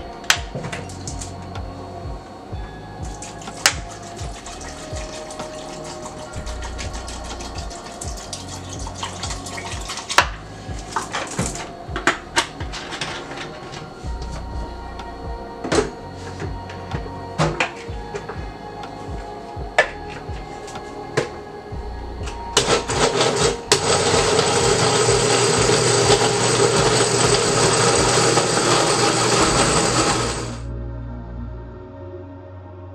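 Knocks and clinks of a glass blender jar and a plastic water bottle being handled, then, about three quarters of the way in, a countertop blender starts and runs loud and steady, puréeing chopped June plum and ginger with water into juice.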